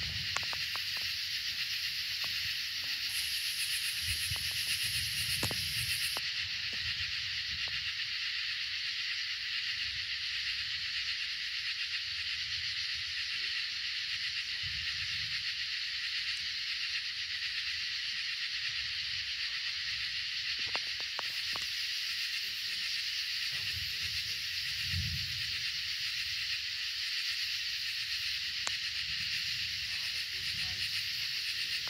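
Steady, high-pitched chorus of night insects that runs on without a break, with a few soft low rumbles now and then.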